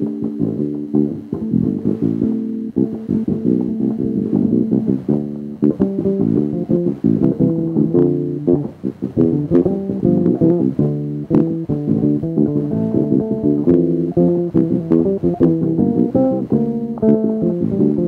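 Electric bass guitar played fingerstyle: an improvised modern-jazz line of many short plucked notes in quick succession, each with a clear attack.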